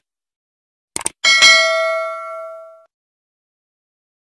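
Subscribe-button animation sound effect: two quick clicks about a second in, then a bright notification-bell ding that rings for about a second and a half and fades out.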